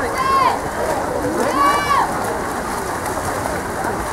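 Two drawn-out shouted calls across the pool in the first two seconds, over a steady hiss of water being splashed by swimming players.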